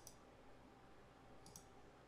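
Near silence, with faint clicks of a computer mouse: one at the start and a quick double click about a second and a half in.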